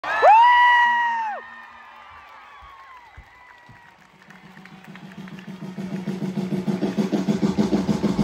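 A concert crowd: one loud, high whooping scream close by at the start, then quieter crowd noise, then the band's intro music fading in as a fast low pulsing beat that grows steadily louder.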